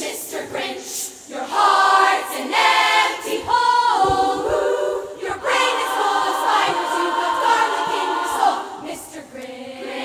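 Large women's choir singing a show number in harmony, with several voice parts together and a short break in the singing about a second in.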